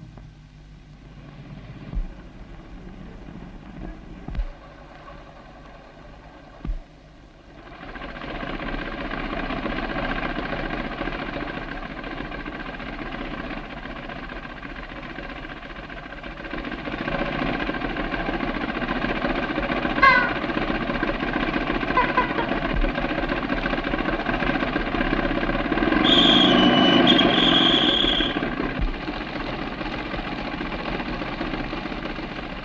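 Crowd hubbub of many voices at once, quiet at first and swelling about seven seconds in. Near the end a shrill whistle sounds for about two seconds.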